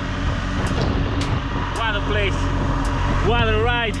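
BMW R1200GS boxer-twin motorcycle running on the road, heard from an on-bike camera as a steady engine drone under continuous riding noise.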